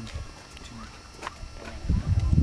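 A few quiet footsteps on outdoor ground, heard as scattered short clicks, with faint voices behind.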